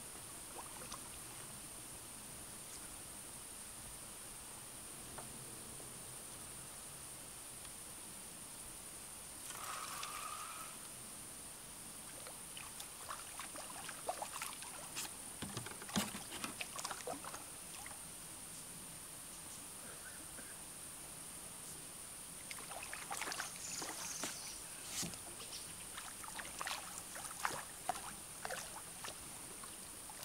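A hooked carp splashing at the surface as it is played in on a rod. The splashes are faint and come in two spells: a scatter from about a third of the way in, then a busier run over the last third.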